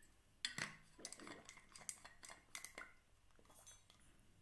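A metal water bottle being handled and put away after a drink: a string of small metallic clinks and clicks over about three seconds, the first one the loudest.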